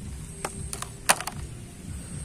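A few light clicks and knocks of hard plastic as a toy water pistol is handled and set down into a plastic basket, the loudest knock a little past halfway.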